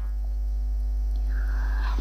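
Steady low electrical mains hum with a faint hiss.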